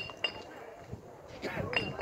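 Short, high ringing clinks, two in quick succession at the start and another near the end, over faint distant voices.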